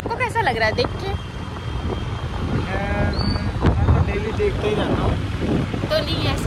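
Steady low rumble of vehicle noise and wind on the microphone, with snatches of indistinct voices.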